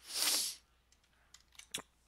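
A man's quick breath in at the very start, then a few faint clicks in the pause before he speaks again.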